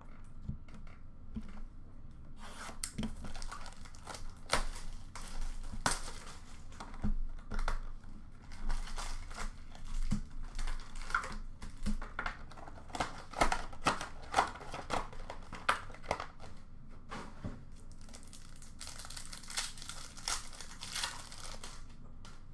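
Plastic wrapping being torn off a box of Panini Recon basketball cards and the packs inside handled and opened: a long run of sharp crinkles and rips, thickest about two thirds of the way through, with a stretch of hissing crinkle near the end.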